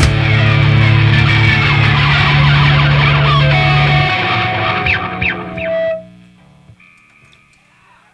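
Live metal band with distorted electric guitars and drums playing out the end of a song. The low end cuts out about four seconds in, a guitar note rings on, and about six seconds in it all drops away to a faint hum.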